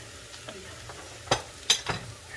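Sliced eggplant sizzling steadily in hot garlic-infused oil in a stainless-steel frying pan. Three sharp clicks in the second half come from a metal spoon being handled.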